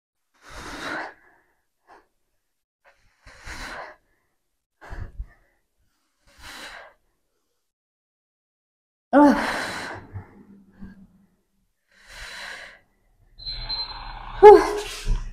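A woman's hard exhalations from exertion, one every two to three seconds, as she lifts a heavy dumbbell through repeated wide-stance deadlift reps. A short spoken word comes about nine seconds in.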